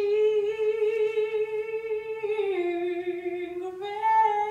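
A woman singing long held notes into a microphone, almost unaccompanied. The note steps down a little about two seconds in and rises again just before the end.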